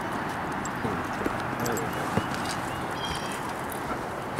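Small clicks and knocks of a hooked crappie being unhooked by hand, one sharper knock a little after two seconds, over a steady hiss.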